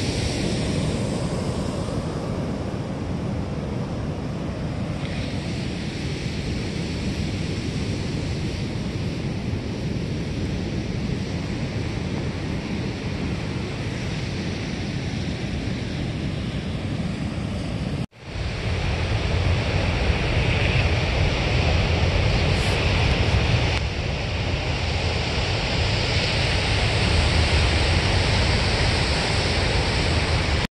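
Seaside ambience: a steady noise of surf, with wind rumbling on the microphone. About two-thirds of the way through it cuts out abruptly for a moment, then comes back louder with a deeper rumble.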